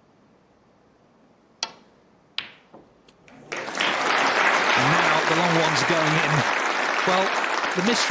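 A snooker cue strikes the cue ball with a sharp click, and a second ball click follows less than a second later as the ball hits an object ball. About a second after that, loud applause from the arena crowd swells up for a potted red and carries on, with a man's voice talking over it.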